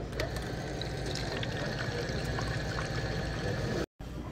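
Orange juice dispenser running with its push button held, juice pouring into a paper cup over a steady low hum from the machine. The sound starts and cuts off abruptly.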